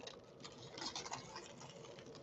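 Faint crinkling and rustling of foil trading-card pack wrappers being handled and torn open, with scattered light clicks.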